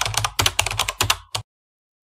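Computer keyboard typing sound effect: a quick run of about a dozen keystrokes over the first second and a half, then it stops, as the outro text is typed out.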